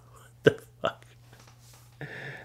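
Two short breathy vocal sounds from a man, about half a second apart, like a clipped chuckle.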